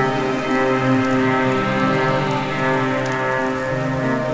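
Ambient electronic music: sustained synthesizer chords held steadily under a dense rain-like hiss.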